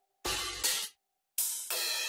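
Crash cymbal samples auditioned one after another: two short bright hits that cut off abruptly, a brief silence, then a longer sustained sound with pitched tones under it starting about a second and a half in.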